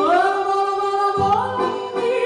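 A woman singing a folk song in long held notes that slide in pitch, accompanied by two accordions. Accordion bass chords come in about a second in.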